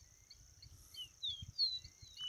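Caboclinho (a Sporophila seedeater) singing a few short, clear whistled notes, some falling in pitch, about a second in. Behind them runs a steady high insect buzz with faint chirps repeating about four times a second.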